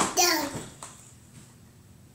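A toddler's voice: one short exclaimed syllable whose pitch falls steeply over about half a second, then a quiet room.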